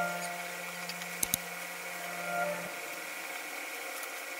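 Faint handling of lamp parts and packaging: two quick sharp knocks just over a second in. Under them a low steady tone runs until it cuts off before three seconds in.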